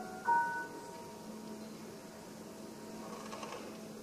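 Grand piano: a single soft chord struck just after the start and left to ring, fading slowly over the next few seconds.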